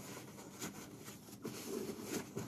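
Faint rustling and rubbing of a paper towel wiping grime from the car floor around a seat guide, with a few soft bumps.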